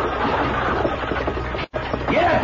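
Radio-drama sound effects of horses galloping, as the music bridge gives way to the ride. A split-second dropout to silence comes near the end.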